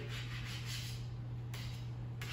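Quiet room tone with a steady low hum and no distinct sounds.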